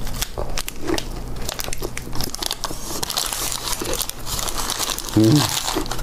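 Paper wrapper around a gimbap roll crinkling in the hand as the roll is bitten and chewed close to the microphone, with many small clicks from the chewing. A short "mm" about five seconds in.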